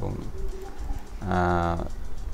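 A man's drawn-out filler hum, held at one steady pitch for over half a second a little past the middle.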